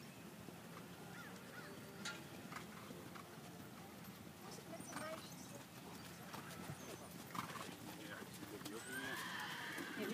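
A horse whinnying near the end, over faint scattered knocks.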